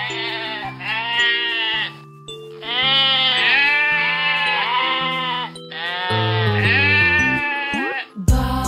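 A sheep bleating three long, wavering times over background music of held chords.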